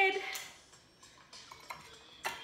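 Metal bar spoon and rocks glass clinking and tapping as a cocktail is stirred and the spoon set down: one sharp clink about a third of a second in, then a few faint taps.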